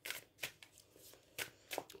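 Quiet pause holding four or five faint, short clicks spread over two seconds.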